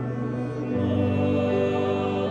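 Small mixed choir of men and women singing sustained chords, the harmony shifting to a new chord about three-quarters of a second in.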